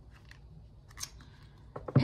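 Playing cards being shuffled and handled in the hands: scattered soft card flicks and taps, a sharper snap about a second in, and a quick run of taps near the end.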